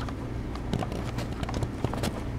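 Camera handling noise: irregular clicks, knocks and rubbing as the camera is grabbed to stop the recording, over a low steady hum.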